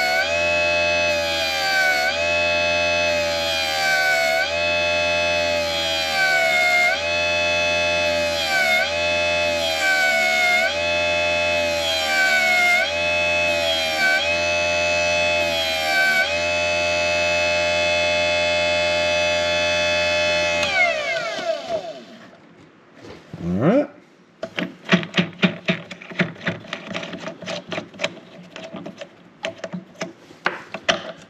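Electric tire truer motor spinning a foam RC tire, its whine dipping in pitch about once a second as a file is pressed into the tread to pre-feather it. About 21 seconds in the motor is switched off and winds down. Irregular clicks and rattles follow as the tire is handled on the spindle.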